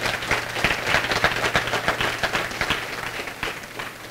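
Audience applauding: a dense patter of many hands clapping that thins and fades near the end.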